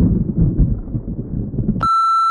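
A low, irregular rumbling sound effect, then about two seconds in a steady, high electronic beep that starts abruptly.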